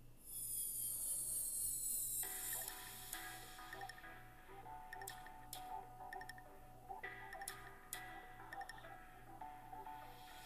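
Soft background music: sustained melodic notes over a light, even ticking beat.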